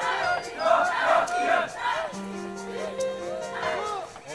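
Many men's voices chanting together in rhythmic shouted calls, a marching chant from soldiers in formation; in the second half the voices hold longer, steadier notes.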